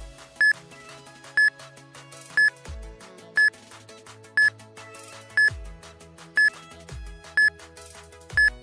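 Countdown timer sound effect: a short, high electronic beep once every second, eight in all, over background music with low bass notes.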